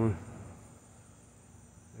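Faint, steady high-pitched chirring of insects in a summer garden, a continuous background trill with no breaks, after the last word of speech fades in the first moment.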